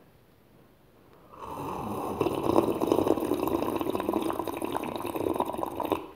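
A person drinking from a glass mug close to the microphone, taking long continuous gulps of liquid. The drinking starts about a second and a half in and carries on to the end.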